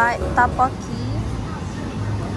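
A few short vocal sounds from a person in the first second, over a low steady background hum.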